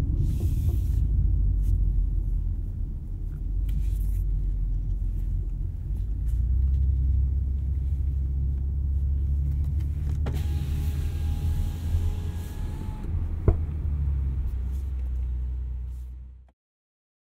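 Cabin sound of a 2019 BMW X4 M40i's turbocharged 3.0-litre inline-six cruising in second gear, a steady low engine and road rumble heard through in-ear binaural microphones. A faint high tone sounds for a few seconds past the middle, and there is a single click near the end before the sound fades out.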